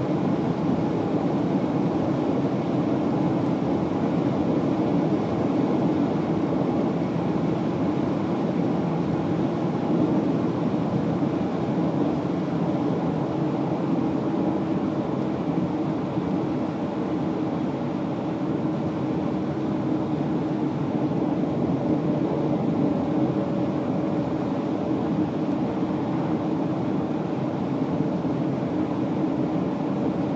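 Jaguar XJS driving at an even speed: a steady drone of engine and road noise with no revving or gear changes, easing slightly for a few seconds midway.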